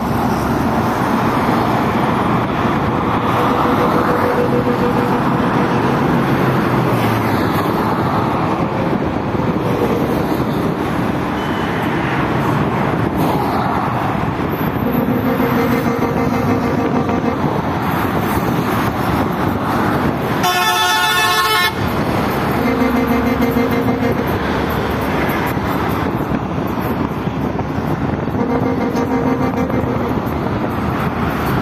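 Steady traffic noise from a busy multi-lane road, with several vehicle horn toots, each held for a second or two. One shriller horn blast comes about two-thirds of the way through.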